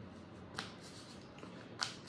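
A tarot deck being shuffled by hand: a faint rustle of cards with a few light snaps, the sharpest near the end.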